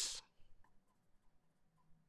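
Marker pen writing on a white board: a few faint, short scratches and ticks, just after a spoken word trails off at the start.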